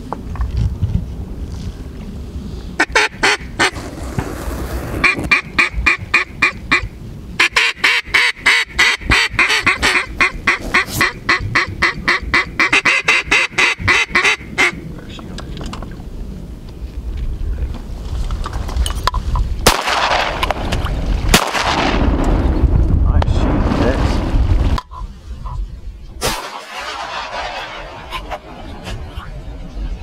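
Mallard duck call blown by a hunter to work passing mallards: a long run of short quacks, about five a second, lasting several seconds. Two sharp cracks and a rush of noise follow later.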